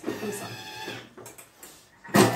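Thermomix food processor giving a steady whine for about a second that fades away, followed by a few faint clicks as its controls are handled.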